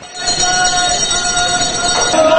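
Fish-market floor noise with motorized turret-truck carts running, and a steady high-pitched whine over it.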